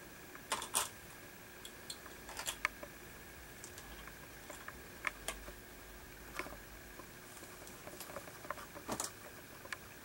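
Faint, irregular clicks and taps of plastic toy race-track parts being handled as a diverter piece is snapped back onto the track.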